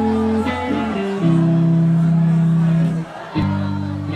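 Rock band playing live, guitars and bass holding chords that change about a second in and again just before the end, with a voice over the music.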